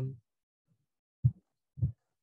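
The end of a man's spoken 'um', then two brief low vocal sounds from him, a little over a second in and near the end, with dead silence in between from a noise-suppressed web-call microphone.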